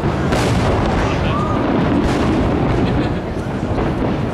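Fireworks going off in quick succession: a continuous rolling rumble of distant bangs with a few sharper cracks.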